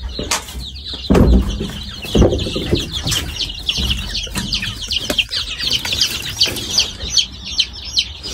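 A brood of young chicks peeping in a brooder, a dense stream of short high chirps. A couple of low thumps come about one and two seconds in.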